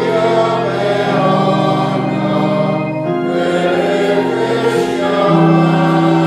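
Church congregation singing a slow hymn in unison, accompanied by an electronic keyboard set to an organ sound, with long held notes that change every second or two.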